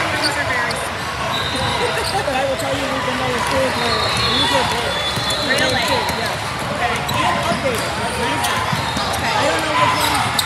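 A basketball bouncing on a hardwood court during play, with short high squeaks and a steady chatter of many voices around a large hall.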